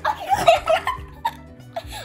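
Girls giggling in short bursts during the first second, over steady background music.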